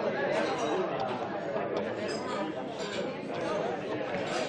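A group of guests chatting all at once: a steady hubbub of overlapping conversation in which no single voice stands out.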